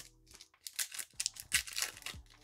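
The wrapper of a Topps Chrome trading-card pack being torn open and crinkled by hand, with a run of short crackles from about half a second in.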